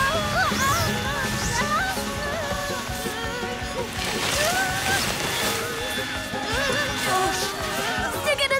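Background cartoon music over a steady hum and sloshing spray from a mud vacuum hose running, with wordless cries and squeals from the characters.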